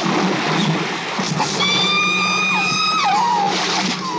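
Film soundtrack with music: a loud rush of water noise at the start, then a long, high, held tone that slides down in pitch a little past halfway and again near the end.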